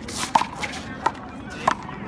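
Rubber handball being struck and bouncing off the wall and court during a rally: three sharp, slightly ringing pops about two-thirds of a second apart.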